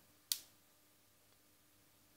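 A single short, sharp click about a third of a second in, over a faint steady hum.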